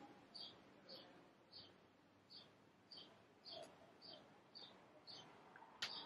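Near silence with a faint bird chirping over and over, short notes that each step down in pitch, about two a second. A single faint click sounds near the end.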